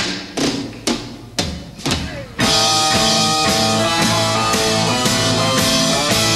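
A live progressive rock band starting a piece: a handful of single drum strokes about half a second apart, then the full band comes in loudly about two and a half seconds in and plays on with drums and sustained chords.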